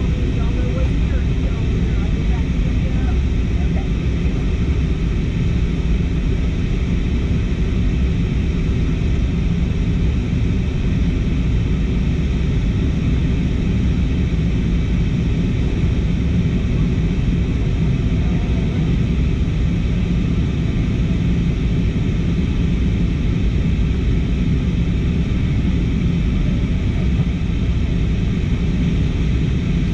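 Steady cabin noise of a jet airliner in flight from a window seat: an even engine and airflow rush, strongest in the low end, unchanging throughout.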